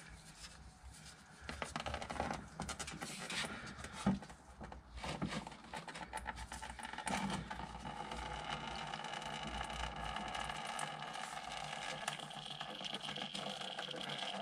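Faint scraping and light clicking of a spin-on oil filter being turned off a VW T3 engine by a gloved hand, with a steadier faint noise from about halfway.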